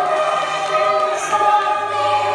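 Choral music playing: a choir singing long held notes, with no beat under it.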